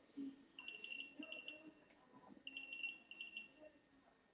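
Faint electronic beeping tone in two trilling bursts, each just over a second long, about two seconds apart, over a faint low murmur.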